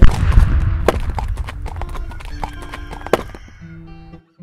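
A muzzle-loading field cannon firing: one sudden loud boom that rolls off into a low rumble over about three seconds. Music comes in under it in the second half.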